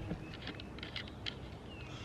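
Scattered light clicks and taps of a folding survival axe multi-tool being turned over and handled in the hands.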